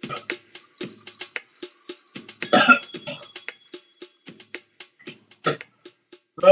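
A man coughing harshly, a loud burst about two and a half seconds in and a shorter one near the end, while struggling to keep down a gallon of milk. Background music with a steady clicking beat plays throughout.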